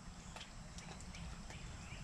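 Quiet outdoor background with a few faint, soft clicks scattered through it.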